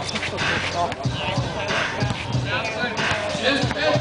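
Basketball bouncing on a concrete court in a game of streetball, repeated thuds amid players' shoes and men's voices calling out.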